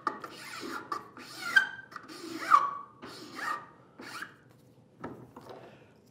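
Flat metal file rasping across the end grain of a small sapele workpiece, in a series of separate strokes that die away after about four seconds.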